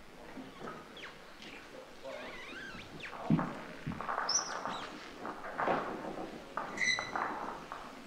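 Lawn bowl delivered onto an indoor carpet mat and rolling into the head, knocking against other bowls about three seconds in with a sharp thunk and a smaller second knock. Short high squeaks follow twice later on.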